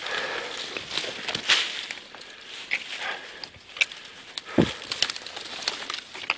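Someone pushing on foot through dry brush: twigs snapping and scraping and dry leaves crunching in irregular sharp snaps, with one heavier thump past the middle.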